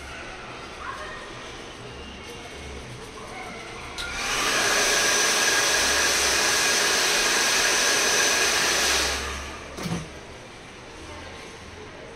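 Hand-held hair dryer switched on about four seconds in, blowing steadily with a faint whine over the rush of air for about five seconds, then switched off and winding down, followed by a short click.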